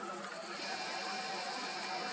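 Crickets trilling steadily in a high, thin continuous band over faint background hiss.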